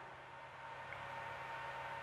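Faint room tone: a steady hiss with a low electrical hum under it.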